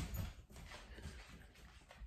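Faint sound from a pet dog, fading away about half a second in, followed by near quiet.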